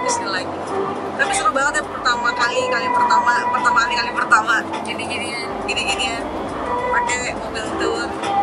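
A woman talking over background music, with the low running noise of a van cabin underneath.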